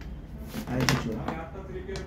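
A man's voice saying a word or two, with a short, light click of plastic casing near the end as the patient monitor's front panel is swung shut onto its housing.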